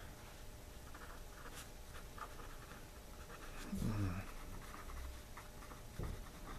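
A pen writing on paper: a run of faint, short scratching strokes as words are written out by hand. About four seconds in, a brief low voice-like sound is louder than the writing.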